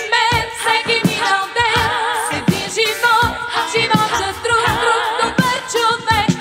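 Music: a 1983 Bulgarian estrada pop song, a melody line with wide vibrato over drums keeping a steady beat.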